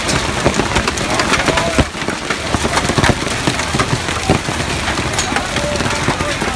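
Heavy hail pelting down on pavement and parked cars: a loud, dense clatter of countless small impacts.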